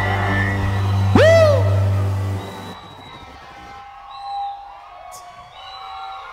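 Live worship band music holding a low sustained note, with one voice letting out a rising-then-falling whoop about a second in. The music stops about two and a half seconds in, leaving quieter congregation voices.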